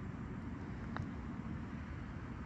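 A putter striking a golf ball: a single faint click about a second in, over a steady low outdoor rumble.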